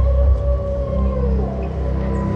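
Dark, atmospheric music accompanying an aesthetic group gymnastics routine: sustained deep bass under held tones, with one tone that slides down in pitch a little past halfway.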